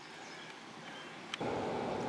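Quiet outdoor background; about one and a half seconds in there is a light click, followed by a soft, steady rustling noise.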